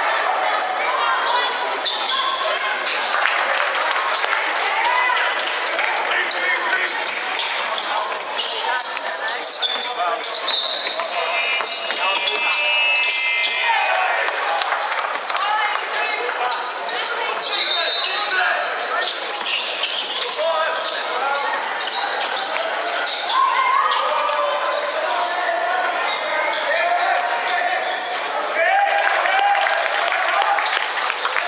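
A basketball bouncing on a hardwood court amid calling voices of players and spectators, all echoing in a large indoor hall.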